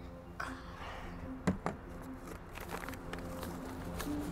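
Quiet background music bed under soft handling of paper money and a glass jar as cash is taken out and counted, with two short clicks about a second and a half in and a few fainter rustles later.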